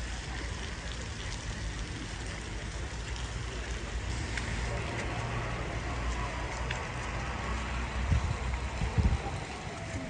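Steady low rumble of idling coach buses under a hiss of light rain on wet pavement, with a few dull thumps about eight and nine seconds in.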